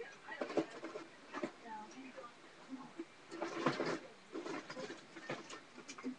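Loose plastic Lego and Bionicle pieces being rummaged through: scattered clicks and short clatters, the sharpest a little past the middle.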